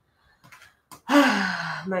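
A woman's long, breathy voiced sigh, falling in pitch, about a second in, after a moment of near quiet.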